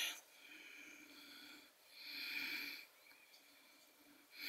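Soft breathing through the nose, two faint breaths, the second a little louder, about two seconds in.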